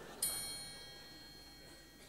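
A single high metallic chime, struck once shortly after the start and left to ring and fade away.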